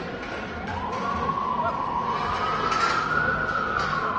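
A police siren wailing: a single slow sweep that rises in pitch from about half a second in, peaks past three seconds and begins to fall near the end.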